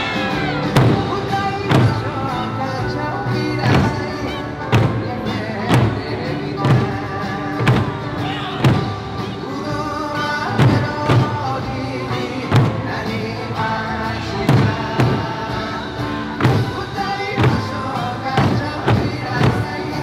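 Eisa ōdaiko barrel drums struck together by a troupe, sharp booming beats about once a second, over folk backing music.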